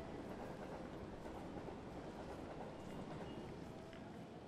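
Faint, steady railway-platform background sound with a low rumble of rail traffic and a few light clicks.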